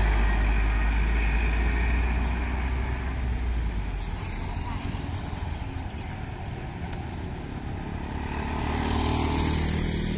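Road traffic on a bend. An SUV's engine is loud at first and fades over the first few seconds as it drives off. Near the end, motorcycles and a car grow louder as they pass close by.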